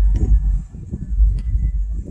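Wind buffeting a phone's microphone: an uneven, gusty low rumble.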